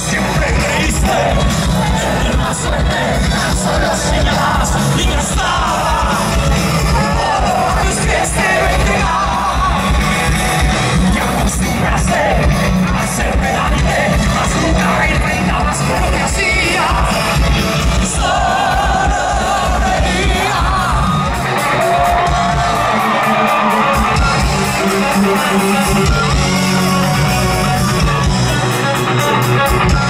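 Live rock band playing loud through a large PA, a male vocalist singing over electric guitars, keytar, bass and drums. The sound is picked up from the audience. The heavy low end drops away for a few seconds near the end.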